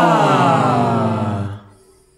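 Several voices of a small a cappella ensemble sliding down in pitch together on a held vowel, loud at first and fading out about a second and a half in.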